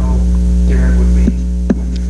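Loud, steady electrical mains hum, a low buzz with higher overtones, in the microphone feed; it eases somewhat a little past halfway. A faint voice sits under it, and a sharp click comes near the end.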